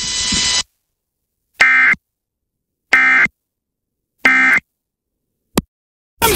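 Emergency Alert System end-of-message data signal: three short, identical raspy digital bursts about 1.3 s apart, marking the close of the alert. They follow about half a second of broadcast hiss, and a brief click comes near the end.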